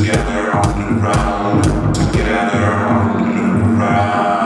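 Deep tech / tech house track playing in a DJ mix: a steady kick drum about two beats a second with sharp hi-hat hits under a droning, buzzy line. A little past halfway the kick drops out, leaving the drone to carry on alone as a breakdown.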